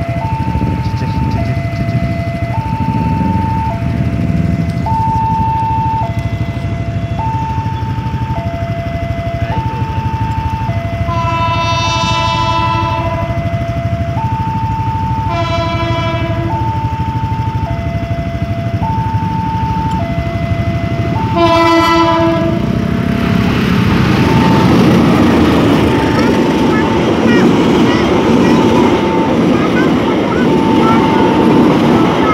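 Level-crossing warning alarm sounding a two-tone chime, alternating high and low about once a second. A train horn blows three times as the train approaches: a long blast, a shorter one, then a brief one. After the last blast the train's passing noise takes over and is the loudest sound, with the alarm still going faintly beneath it.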